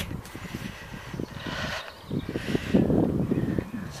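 Wind buffeting a handheld camera's microphone: an uneven low rumble, with a short rustling hiss about midway.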